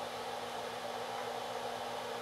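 Steady, even whooshing hiss of equipment cooling fans with a faint low hum underneath, with no clicks or other events.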